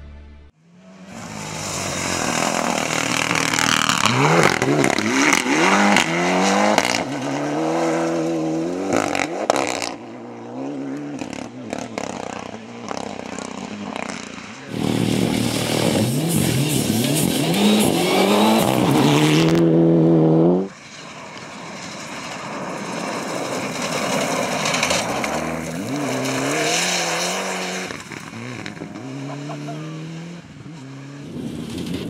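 Mitsubishi Lancer Evolution rally cars' turbocharged four-cylinder engines at full throttle on a gravel stage, pitch climbing and dropping through gear changes. Several separate passes are heard, and one loud pass cuts off abruptly about two-thirds of the way through.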